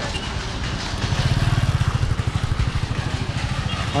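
A small motor vehicle's engine, such as a motorbike's, running close by with a fast, low, pulsing beat that grows louder from about a second in and fades near the end, over general street traffic noise.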